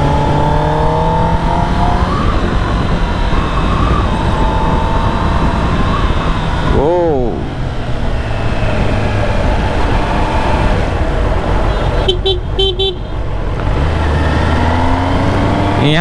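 Kawasaki ZX-10R's inline-four engine running at city cruising speed under a steady rush of riding wind, its pitch rising in the first two seconds. A vehicle horn gives a quick run of beeps about twelve seconds in.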